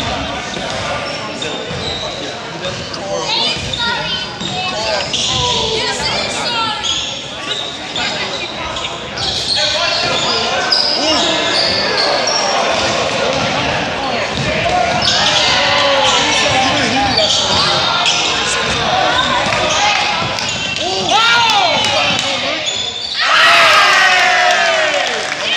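Basketball game in a gym: a ball bouncing on the hardwood floor among players' and spectators' voices, echoing in the large hall. The sound gets louder near the end.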